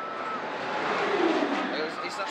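Drop tower gondola plunging down a tower over 400 feet tall in free fall: a rushing whoosh that swells to a peak about a second in and then fades, with a faint falling tone near its loudest point.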